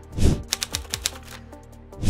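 Video transition sound effect: a short whoosh, then a quick run of clicks that thins out after about a second, over quiet background music.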